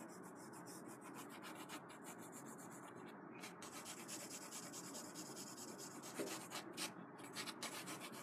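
AnB Eagle pencil hatching on drawing paper: a faint, continuous scratching of the lead across the sheet, with quicker, more separate strokes near the end.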